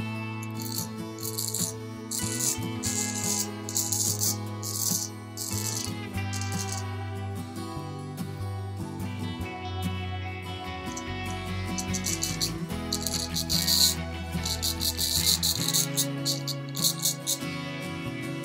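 Soft acoustic guitar music plays steadily, while a straight razor scrapes through lathered stubble in short rasping strokes on a second pass across the grain: one run of strokes in the first five seconds and another about two-thirds of the way through.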